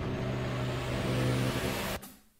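Steady low electronic drone opening a metalcore track, with a haze of hiss and a faint high whine rising slowly, cutting off suddenly at the end.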